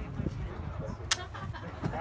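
A single sharp rifle shot about a second in, fired from a firing line, over a low rumble.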